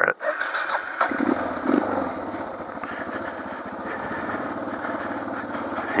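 Suzuki DR650's single-cylinder four-stroke engine being started. It catches about a second in and then runs steadily.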